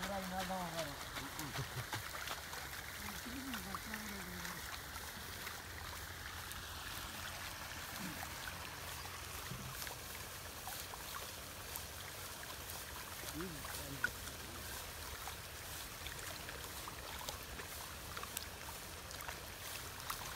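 Rice seedlings being pulled by hand from waterlogged nursery mud: soft wet splashing, dripping and small clicks over a steady hiss. A few brief voices come through near the start and about 13 seconds in.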